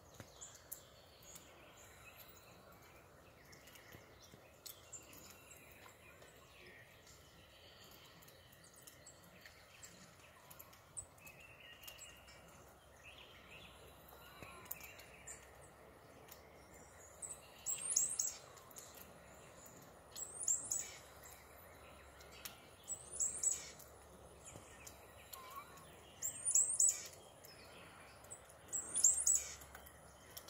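A songbird singing a short, high phrase over and over, about every three seconds through the second half, with faint scattered chirps from other birds before it.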